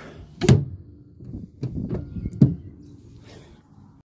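A few short, sharp knocks and thumps, the loudest about half a second in and another about two and a half seconds in, with rustling handling noise between them.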